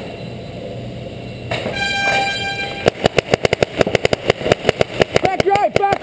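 An air horn gives one steady blast about a second and a half in, the signal that starts a paintball game. From about three seconds in, paintball markers fire rapid strings of pops, and players shout near the end.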